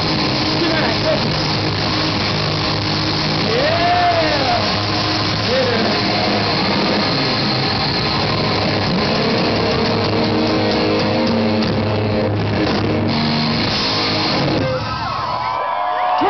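Live hard-rock band playing loud, with distorted electric guitars and bass, recorded in a way that sounds somewhat distorted. A few shouted vocal lines sit over the band. Near the end the band stops abruptly and voices take over.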